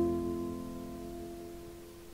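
The last chord of a piano accompaniment on an old 1948 recording, ringing and fading away over about two seconds, over a faint hiss from the recording.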